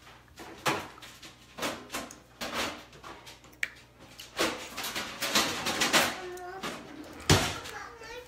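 A run of separate knocks and clatters from household things being handled in a kitchen, like cupboard doors and metal trays, about six or seven over several seconds, with a voice briefly late on.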